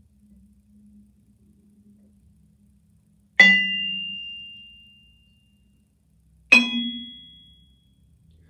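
Multiphonic harmonic on a Musser vibraphone's low bars: a yarn mallet strikes a bar near its edge while a finger lightly touches it about 30% from the end. It is struck twice, about three seconds apart, and each strike rings as a complex chord of a low tone and several high non-harmonic partials that fades over a second or two. The second strike is slightly higher in pitch.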